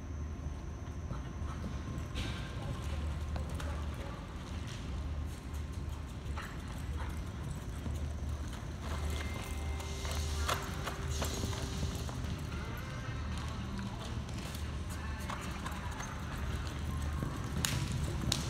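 Horse galloping on soft arena dirt through a barrel racing run, its hoofbeats coming as a run of faint quick knocks over a steady low rumble.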